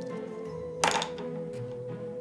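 A single sharp thunk a little under a second in, as a craft stamp is pressed down onto paper on a tabletop. Background music with steady held notes plays throughout.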